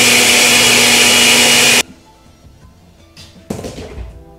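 Countertop blender with a glass jar running at full speed, a loud steady whir that cuts off suddenly about two seconds in. Near the end comes a short scraping clatter as the glass jar is lifted off the motor base.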